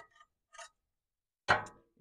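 Faint clicks and scrapes of a metal spatula against a plate, then a sharp metallic clank about one and a half seconds in as the spatula is set down on the steel griddle top, dying away quickly.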